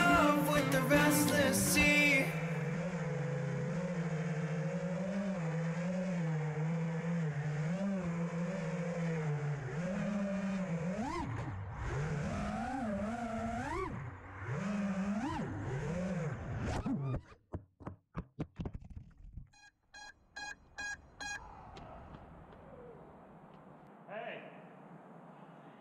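FPV quadcopter's brushless motors and propellers humming steadily, then rising and falling in pitch with bursts of throttle. Near the end the sound breaks into choppy stutters and fades to a faint hiss.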